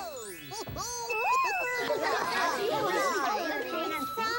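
A sparkling twinkle sound effect sweeps upward at the start. Then several children's voices overlap in excited chatter and laughter.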